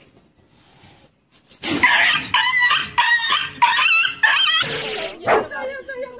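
An animal crying out in a run of about five loud, harsh calls in quick succession, starting about a second and a half in, followed by a sharp thump near the end.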